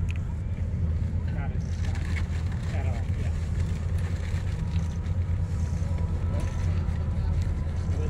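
Twin-engine wide-body jet airliner flying low overhead, its engines making a steady low rumble.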